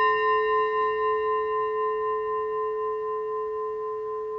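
A single struck bell-like metal chime ringing on and slowly fading, with a slight waver.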